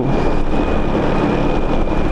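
Steady wind rushing over the microphone on a moving Honda Biz scooter, with its small single-cylinder four-stroke engine running evenly underneath.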